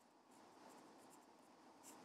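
Faint scratching of a pen writing on paper: a series of short, quick strokes as a few words are written out.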